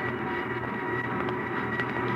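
Steady mechanical din of factory machinery, a radio-drama sound effect, running evenly with a faint steady hum through it.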